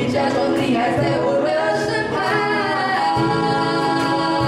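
A woman singing a gliding melodic line live over acoustic guitar accompaniment, with the accompaniment growing fuller about three seconds in.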